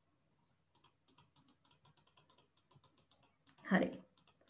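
Faint computer keyboard typing: a quick run of light key clicks. Near the end comes a short, louder sound that falls in pitch.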